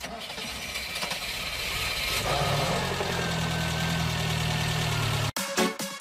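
Start of a new track in a disco polo dance mix: a noisy sound-effect intro that swells and settles into a low steady drone about two seconds in, then cuts off suddenly, and an electronic dance beat starts near the end.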